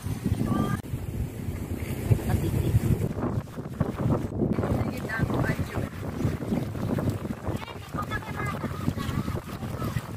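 Wind buffeting a phone microphone outdoors, an uneven low rumble, with faint voices in the background.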